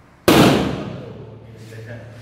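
A single loud bang from a short circuit at an electrical distribution board as the main switch is turned on, dying away over about a second. A steady low hum lingers after it.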